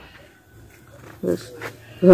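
A pause in a man's talk: low background with one short, quiet vocal murmur a little over a second in.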